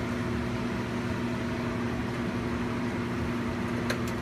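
Steady hum of a biosafety cabinet's blower: an even rush of air with a low constant tone. A light click near the end.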